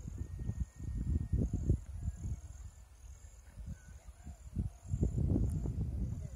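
Wind buffeting the phone's microphone in uneven gusts, a low rumble that swells and fades, loudest about a second in and again near the end.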